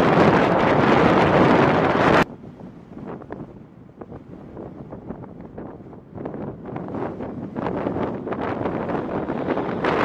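Jet engine roar from a fighter climbing away after takeoff, stopping abruptly about two seconds in. Then the A-10 Thunderbolt II's twin turbofan engines on its takeoff roll, starting faint and growing louder toward the end, with wind buffeting the microphone.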